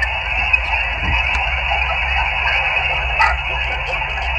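Guohetec Q900 HF transceiver's speaker on 20-metre upper sideband, giving steady band-noise hiss through the narrow receive filter while listening after a CQ call, with no station answering. The hiss starts and stops abruptly as the radio switches between transmit and receive.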